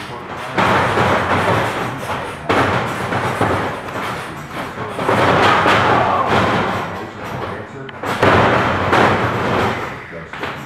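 Several heavy thuds and slams of bodies landing on a wrestling ring's mat, over loud background music.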